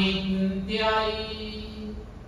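A man's voice chanting a Buddhist recitation in long, drawn-out syllables on a nearly steady pitch, fading toward the end.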